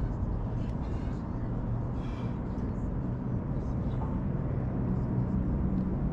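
Steady low outdoor rumble, with faint voices now and then.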